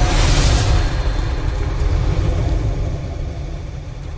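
Cinematic logo-reveal sound effect: a deep rumble with a brief whoosh near the start, slowly fading away.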